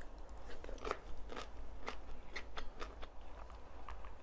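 Biting and chewing a raw long green bean: a run of crisp, irregular crunches, two or three a second.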